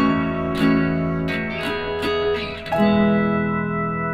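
Background music: strummed guitar chords, with a last chord near three seconds in left to ring and fade.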